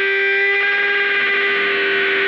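Instrumental rock music: electric guitar run through effects and distortion, holding long sustained notes over one steady low tone.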